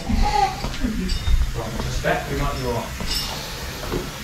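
Indistinct men's voices and laughter, fainter than the talk around them, over a steady low rumble.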